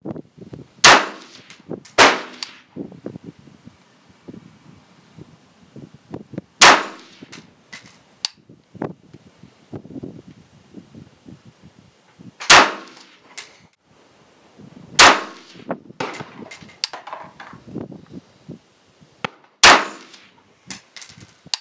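Sig Sauer 516 piston-driven AR-style rifle in 5.56 firing six single shots at uneven intervals, the first two about a second apart and the rest several seconds apart, each with a short ringing tail. Lighter metallic clinks and clicks fall between the shots.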